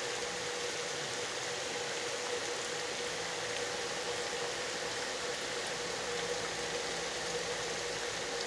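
Steady rain falling on trees and wet ground, an even hiss, with a faint steady hum underneath.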